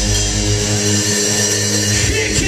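Live rock band's distorted electric guitars and bass holding a steady, droning chord, with no drum beats.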